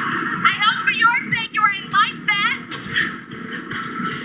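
Television programme audio with background music. In the first half, a quick run of high, squeaky, rising-and-falling calls repeats several times a second for about two seconds.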